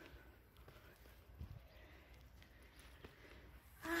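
Faint footsteps on a bare rock path, a few soft thuds and scuffs.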